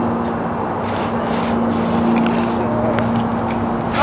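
A steady low hum under a constant hiss, with a few faint clicks.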